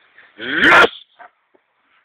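A dog barks once, loud and short, about half a second in, followed by a couple of faint brief sounds.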